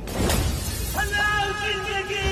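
Glass-shattering sound effect crashing in suddenly at the start, followed about a second in by a steady held pitched note.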